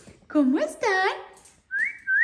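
Yellow-naped Amazon parrot giving two loud, voice-like calls, then a whistle that rises and holds steady near the end.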